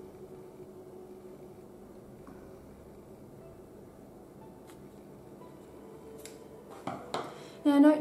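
Faint clicks and handling sounds of scissor blades being worked into a small slit in a lemon to push a folded paper inside, a few light clicks scattered over quiet room tone.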